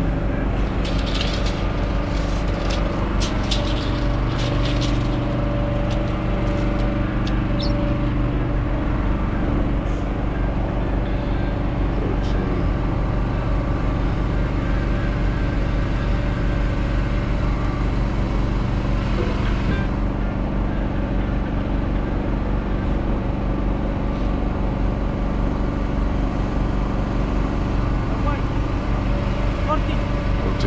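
Diesel engine of a Peterbilt semi truck idling steadily. A few sharp metallic clanks sound in the first five seconds.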